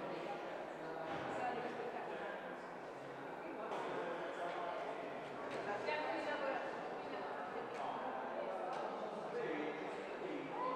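Indistinct chatter of several people talking at once, a steady murmur of overlapping voices in a large room.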